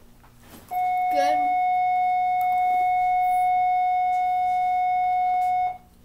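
A single steady electronic tone, held at an even pitch and loudness for about five seconds, then cut off sharply.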